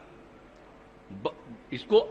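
A man's speech pauses for about a second over faint steady room hum. Short clipped voice sounds follow, and the speech resumes near the end.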